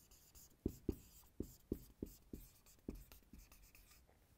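Marker pen writing on a whiteboard: a quick run of short, faint strokes as a word is written out.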